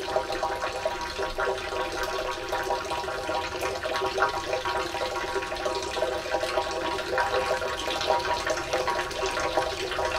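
Water pouring steadily from spouts into stone fountain basins, a continuous splashing with small drips and a steady ringing undertone.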